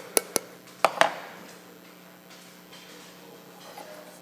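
A few sharp taps, then two louder knocks about a second in with a short ringing tail: a wooden paddle striking a hand-coiled clay pot as it is shaped. Faint room tone for the rest.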